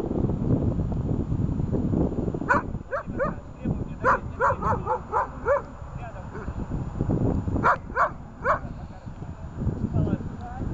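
A dog barking in three bouts of short, high, yelping barks: a couple, then a quick run of five or six, then three more.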